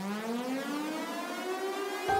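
A cotton-processing machine's electric motor spinning up just after being switched on: a whine with many overtones, climbing steadily in pitch.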